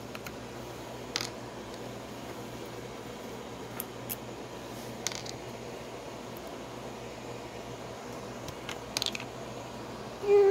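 Screw cap of a mini chainsaw's plastic oil reservoir being twisted off by hand: a handful of small plastic clicks and taps over faint steady hiss.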